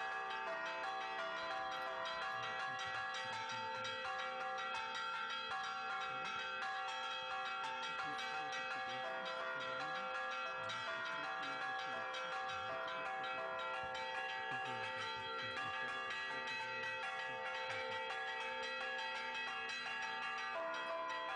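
Church bells ringing continuously, several bells overlapping and each tone ringing on as the next strikes, with faint voices beneath.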